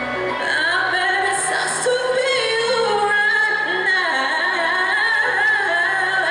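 A woman singing into a handheld microphone over a backing track, holding long notes with a wavering pitch, amplified in a hall.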